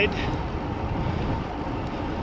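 Wind and road noise of a bicycle ride picked up by a handlebar-mounted camera: a steady low rushing rumble.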